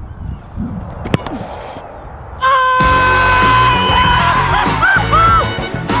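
One sharp thump of a football being struck hard about a second in, then loud music with long held and sliding notes comes in just before halfway and carries on.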